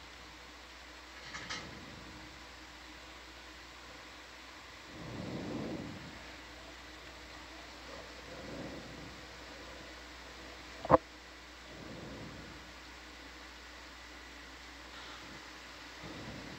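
Steady low hiss of an open microphone line, with a few soft, muffled sounds and a single sharp click about eleven seconds in.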